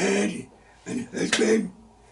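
A man's voice in two short voiced bursts, one at the start and one about a second in. The sounds are indistinct and were not taken down as words, somewhere between mumbled speech and throat clearing.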